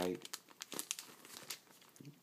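A small clear plastic zip bag crinkling as it is handled, an irregular run of light crackles that thins out toward the end.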